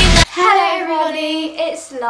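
Intro music cuts off suddenly just after the start, and a girl's voice follows, singing out long drawn-out notes that slide up and down in pitch.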